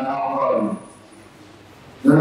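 A man's voice holding a drawn-out syllable that ends about three-quarters of a second in, followed by a pause with only low background hiss.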